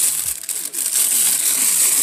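Thin white packing sheet crinkling and rustling as hands unwrap and pull it apart, an irregular crackle throughout.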